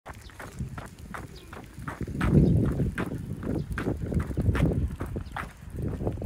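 Shoes slapping and scuffing on asphalt as a toddler pushes himself along on a balance bike, a series of short irregular steps about two or three a second, with a louder low rumble about two seconds in.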